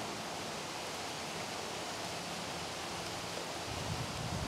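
Steady outdoor background noise, an even hiss without distinct clicks or strokes.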